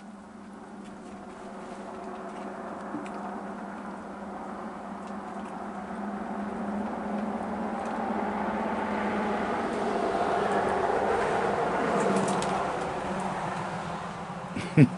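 A motor vehicle passing, its sound swelling gradually over about ten seconds and then fading near the end.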